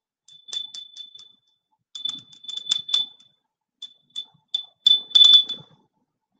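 Rapid short high-pitched beeps at one steady pitch, in three quick clusters, loudest near the end.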